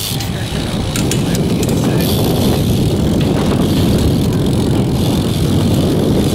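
Wind buffeting the microphone over the rumble of BMX tyres rolling on skatepark concrete, with a few light clicks about one to two seconds in.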